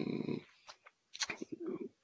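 A man's drawn-out, creaky hesitation sound ('ehh') cut off about half a second in, then a few short, soft mumbled syllables.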